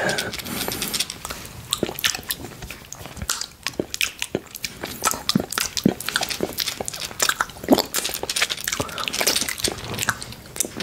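Close-miked biting and chewing of a solid chocolate bar: irregular sharp snaps and clicks as pieces break off between the teeth, with wet mouth sounds between them.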